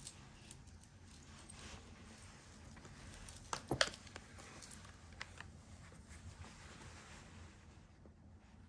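Faint clinks of metal jewelry chains and beads being handled and sorted by hand on a towel, with a short cluster of louder clinks about three and a half seconds in.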